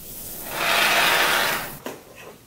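Aerosol can of expanding spray foam hissing as foam is dispensed through its straw nozzle for about a second and a half, then a short click near the end.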